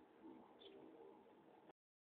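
Near silence: faint room tone with a brief faint high chirp about halfway, and the sound cuts off completely near the end.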